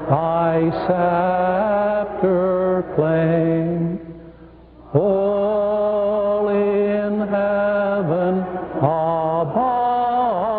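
Slow chant-like hymn singing in low voices, in long held notes that glide from one pitch to the next. There is a short break about four seconds in, and then the singing goes on.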